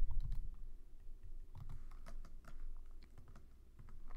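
Computer keyboard being typed in short runs of light key clicks, over a steady low hum.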